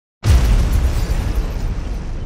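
Cinematic explosion sound effect: a sudden loud blast about a quarter of a second in, with a deep rumble that slowly dies away.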